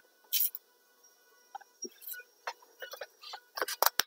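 Clear plastic wrap crackling in short bursts as it is worked over wet inked paper. The loudest burst comes just after the start and a few more come near the end. Under it a faint, steady horn tone holds.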